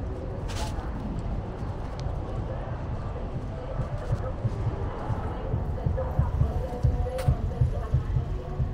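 City street ambience: a steady low rumble, with muffled voices in the distance and irregular low thumps growing louder near the end.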